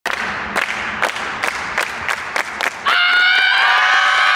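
Group cheering with rhythmic clapping, then from about three seconds in a loud, held team yell.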